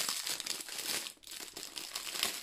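Clear plastic wrap crinkling as a bundle of diamond-painting drill bags is handled and turned over, easing off briefly a little past the middle.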